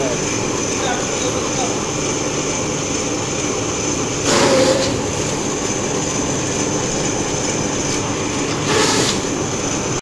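Commercial strip-cut paper shredder running steadily with a thin high whine, with two louder bursts of sheets being cut: one about four seconds in lasting about half a second, and a shorter one near the end.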